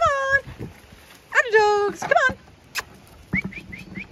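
A domestic cat meowing three times, each call falling in pitch, the middle one the longest. A few short, high chirps follow near the end.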